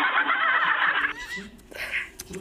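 Several people laughing loudly in shrill, warbling shrieks that cut off abruptly about a second in, followed by a few fainter short cries.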